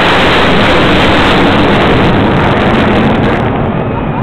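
Jet engines of three fighter jets flying low overhead in formation: a loud rushing jet noise that comes on suddenly and eases off near the end.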